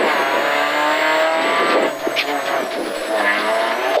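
Ford Fiesta's 1.6-litre four-cylinder rally engine, heard from inside the cabin, pulling hard with rising revs. About halfway through the revs drop as the driver lifts off for a corner.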